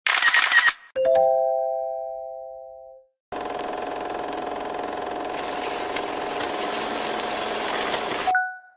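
Produced intro sound effects: a short noisy burst, then a chime-like chord of three tones struck about a second in and fading away over two seconds. After a short gap, a steady crackling hiss with a held tone runs on, as an old-film effect.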